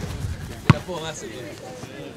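A single sharp thud of a soccer ball being kicked, a little under a second in, over distant voices of players and spectators.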